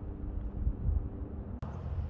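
Steady low outdoor rumble of wind on the microphone with a faint engine-like hum under it, which changes abruptly about one and a half seconds in at an edit.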